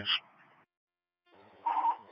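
Two-way radio dispatch traffic on a scanner: a transmission ends in a brief burst of static and cuts off sharply, then after about a second of silence the next transmission opens with static and the start of a voice.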